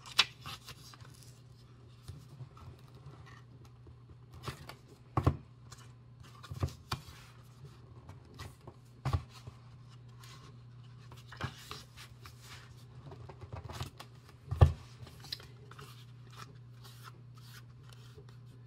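Paper handling: a block of glue-padded paper notepads being pulled and torn apart by hand. It gives scattered short crackles and taps, the loudest about three-quarters of the way through. A steady low hum runs underneath.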